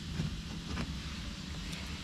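Steady low hum of a spray booth's air handling, with faint rustles of masking tape being pressed along the edge of a car's wheel arch.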